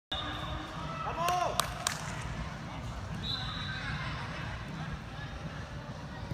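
Indoor soccer ball being kicked on turf in a large hall: two sharp knocks a little under two seconds in, over the hall's low crowd-and-voice hubbub, with a short shout just before the kicks.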